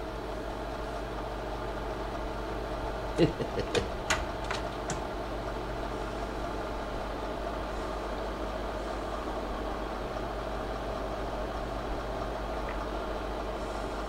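Steady machine hum with a faint whine, unchanging throughout; a short laugh breaks in about four seconds in.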